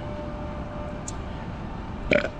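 Steady low rumble of distant street traffic, with a faint steady hum and a small click about a second in.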